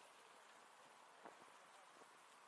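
Near silence: faint outdoor hiss, with a single soft click a little past the middle.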